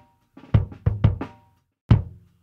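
Soloed close-miked acoustic kick drum track playing a few kick hits, with the snare bleeding faintly through the kick mic. The two strongest hits land about half a second in and just before the end.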